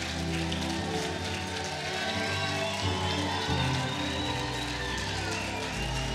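Keyboard playing sustained chords that change every second or so, under a congregation's applause and scattered cheers.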